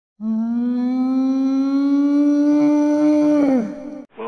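Whale call: one long call with many overtones, rising slightly in pitch for about three seconds, then sliding down in pitch and fading near the end.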